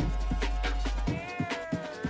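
Electronic dance music playing through a DJ mixer, with fast drum hits and a heavy sub-bass that drops out about a second in. A pitched, meow-like tone then enters and glides slowly down.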